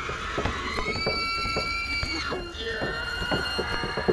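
Experimental sound-art piece of voice-like sounds under long held high tones: one tone holds until about two seconds in, and a second begins just after a short break. Scattered clicks run underneath.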